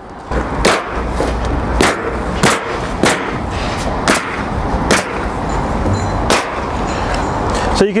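Pneumatic coil roofing nailer (Ridgid) firing nails, about eight sharp shots spaced irregularly over several seconds, with a steady noise underneath.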